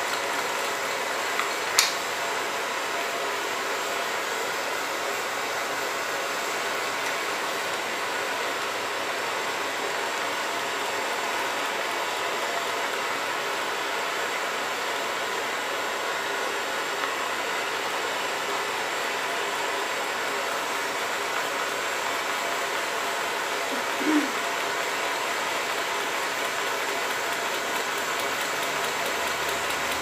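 Blowtorch flame hissing steadily against the hot cylinder of a Stirling engine, with the engine's crank linkage and flywheel running. A single sharp click about two seconds in.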